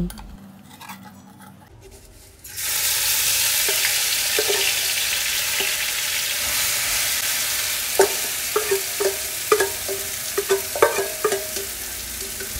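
Ground chili paste for sambal bawang dropped into very hot oil in a wok: a sudden loud sizzle starts about two and a half seconds in and keeps going steadily. Sharp clicks and taps sound over it in the second half.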